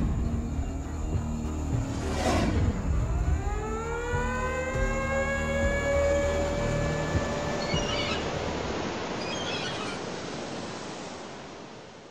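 Cinematic intro sound design over a low rumble. A whoosh comes about two seconds in, then a synthesized tone rises, holds and dies away, with small chime-like sparkles around eight and nine seconds. It all fades out near the end.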